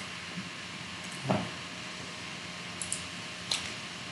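A pause in speech: faint steady room hiss with a low hum, a brief soft sound a little over a second in, and two faint clicks near the end.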